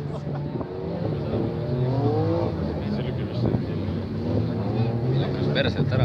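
Engines of several demolition derby cars running together, their pitch rising and falling as they are revved.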